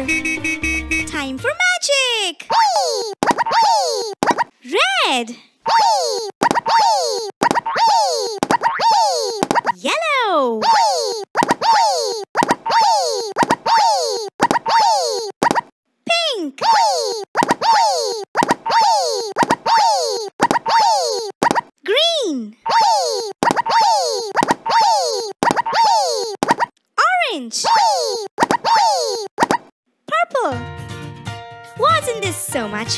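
Cartoon bubble-popping sound effect repeated about one and a half times a second, each pop a short tone falling in pitch, one for each bubble springing up on an animated pop-it toy.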